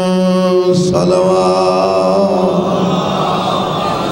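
A man's voice chanting a long held note in a religious recitation. About a second in, the note breaks off with a short breathy noise, then the voice carries on in a wavering, drawn-out melodic line.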